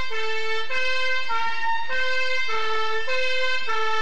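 Two-tone emergency vehicle siren, alternating steadily between a lower and a higher note, each held a little over half a second.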